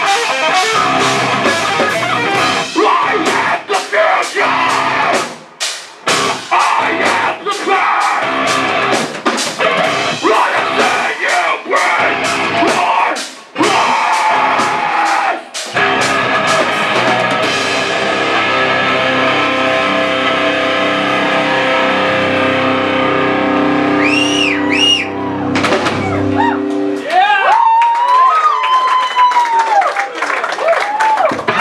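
Live heavy metal band with distorted guitars, drums and vocals playing a chugging stop-start passage of hits with brief silences. Then a final chord rings out for several seconds, and whistles and shouts from the crowd come in near the end.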